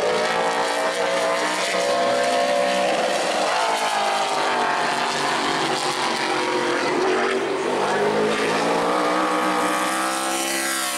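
Super late model stock car's V8 engine running at racing speed on a qualifying lap. Its pitch falls and rises again more than once as the car slows for the turns and speeds up on the straights.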